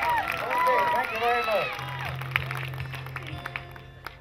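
Voices and instrument sounds from a live bluegrass band on stage, heard through the PA. From about two seconds in a low steady tone holds, with a few light knocks.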